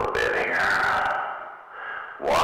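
A man's voice drawn out into one long, slowly falling sound, smeared by heavy echo from a CB radio's reverb effect, fading away near the end.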